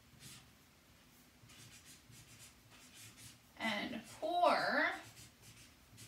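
Marker writing on chart paper: faint scratchy strokes, with a woman's voice slowly saying a word or two about two-thirds of the way through.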